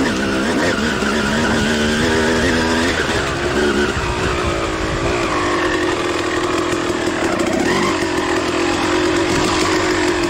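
Suzuki RM250 single-cylinder two-stroke dirt bike engine under way on a trail. Its pitch climbs in several short rises over the first few seconds, then it holds a fairly steady note.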